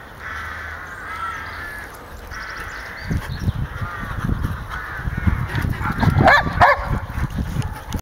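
Belgian Shepherd dogs growling and grumbling in play, a string of short harsh growls that grows louder with a sharper burst near the end. From about three seconds in, low irregular thumps run under the growls.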